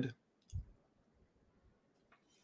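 The end of a man's word, then a single faint click with a soft low thump about half a second in, over quiet room tone.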